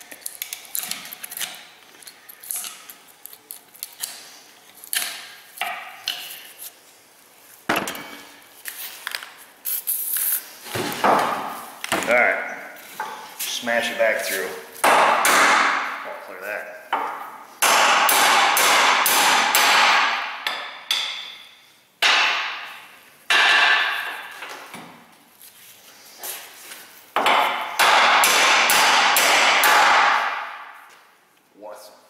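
Hammer blows on a steel driver set on a U-joint bearing cup in a driveshaft yoke, each with a metallic ring. They come in quick runs that get heavier in the second half. Lighter clicks and scraping of a small tool at the cup come first.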